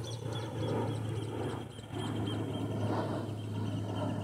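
Aircraft flying overhead on approach to a nearby airport, a steady distant drone.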